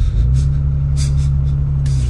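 Title-sequence sound design: a loud, deep, steady rumble with several short bursts of static-like hiss over it.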